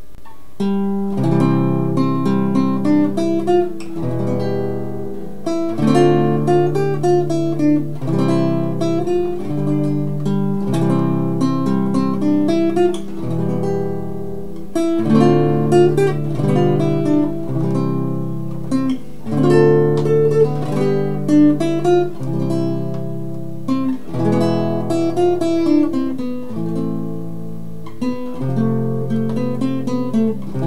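Nylon-string classical guitar playing a slow hymn tune as an instrumental, a plucked melody over held chords, starting about a second in.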